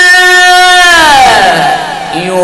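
A man's voice reciting the Quran in melodic tajweed style, holding one long drawn-out note, then sliding down in pitch about a second in and getting quieter near the end.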